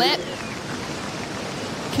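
Heavy shore-break surf: a steady rush of breaking whitewater.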